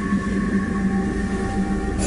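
A steady low drone of several held tones over a rumble, unchanging throughout.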